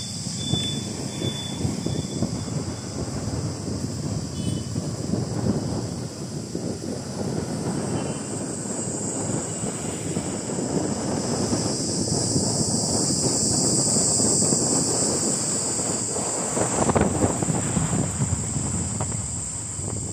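Wind buffeting the microphone and a low rumble of road and engine noise from riding a moving two-wheeler, with a steady high hiss over it. It grows louder in the second half, peaking briefly near the end.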